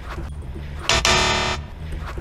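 A harsh, flat buzzer sound effect of the 'wrong answer' kind, lasting under a second about halfway through, marking a mistake; steady background music plays underneath.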